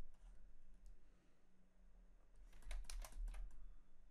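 A quick run of computer keyboard key clicks about two and a half seconds in, over a faint steady low hum.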